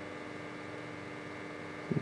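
Steady electrical mains hum with a faint thin whine above it, unchanging throughout.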